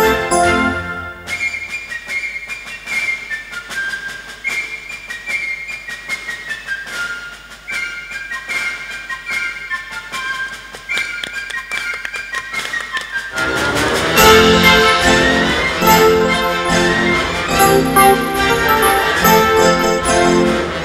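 Two children playing electronic keyboards. About a second in, the music thins to a lone high melody in a flute-like voice with no bass; about 13 seconds in, a louder, fuller accompaniment with bass comes back in.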